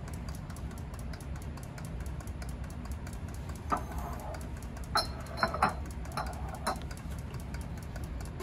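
Steritest peristaltic pump running with a steady low hum and fast, even ticking. A few sharp clicks and knocks of bottles and fittings being handled come in the middle.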